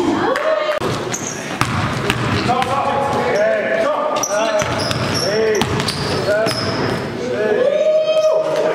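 Live indoor basketball play on a gym floor: the ball bouncing, sneakers giving many short squeaks, and players' voices calling out. The hall's echo carries it all.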